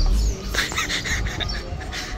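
Birds chirping in short, scattered high calls over a steady low rumble on the microphone.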